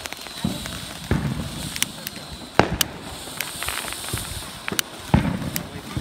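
Ground fountain firework spraying sparks with a steady hiss, punctuated by about a dozen sharp, irregular pops and crackles, the loudest about two and a half seconds in and again near the end.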